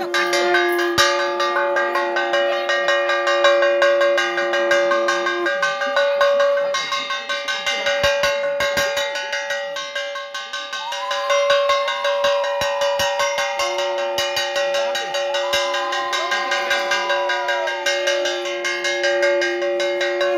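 Puja hand bells rung rapidly and without a break during the aarti, giving a steady ringing tone. A second, lower bell tone drops out for several seconds in the middle and then returns.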